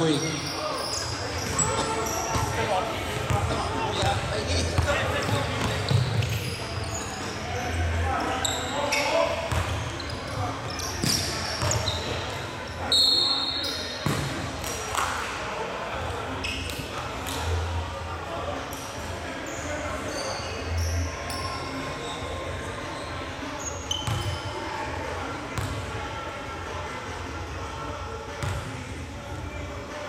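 Indoor basketball game: a basketball bouncing on a hardwood court in repeated thumps, short high sneaker squeaks and players' voices echoing in a large gym. A single high whistle blast sounds about thirteen seconds in, before play stops.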